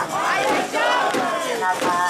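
A crowd of mikoshi bearers chanting and shouting together as they carry the portable shrine, several voices calling over one another.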